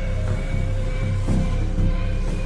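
Background music: a low pulse about twice a second under held, sustained tones.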